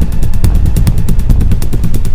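Engine idling close by, a loud, steady run of rapid pulses about ten a second.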